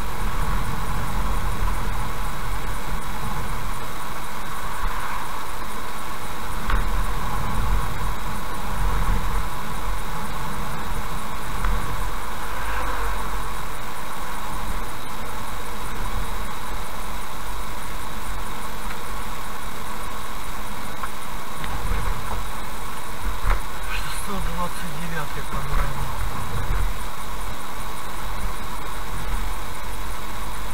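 Car driving steadily along a highway, heard from inside the cabin: constant tyre and road rumble with the engine running underneath.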